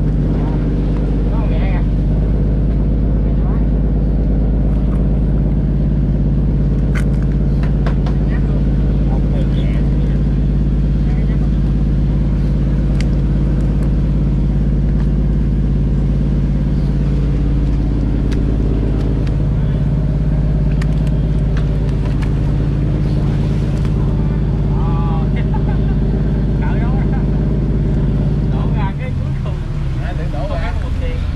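Fishing trawler's inboard engine running steadily, a loud low drone with several held tones; the drone changes abruptly near the end.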